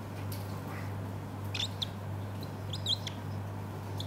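A marker squeaking on a whiteboard as words are written, in two short bursts of high squeaks about a second apart, with a few faint taps. A steady low hum runs underneath.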